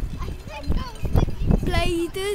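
A boy's voice and laughter close to the microphone, over low rumbling and a few sharp knocks.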